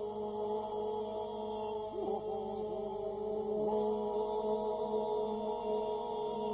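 Men's a cappella folk group singing Albanian iso-polyphony. The group holds a steady drone while a solo voice above it sings a melody that dips and turns.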